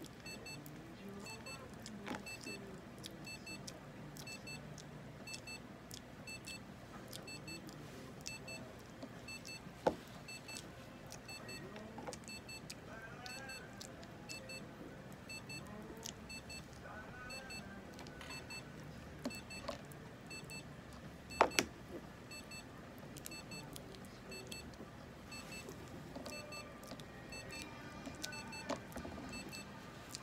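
Quiet handling sounds while a prairie dog is fed by syringe: a few sharp clicks, the loudest about twenty seconds in, and a few faint squeaks. Under them, a faint electronic beep repeats every second or so.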